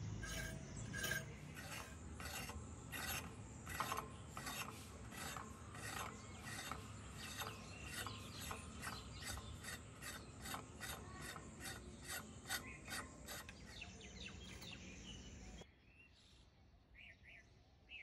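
Snake gourd (chichinga) skin being scraped along the edge of a boti blade: a rhythmic rasp of about two strokes a second. It stops abruptly near the end.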